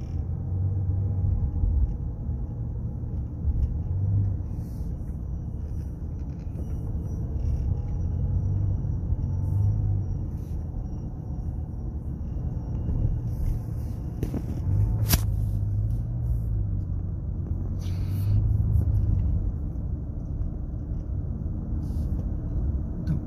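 Steady low rumble of engine and tyre noise inside a car's cabin while it drives along at a moderate speed, swelling and easing slightly with the road. One sharp click sounds about fifteen seconds in.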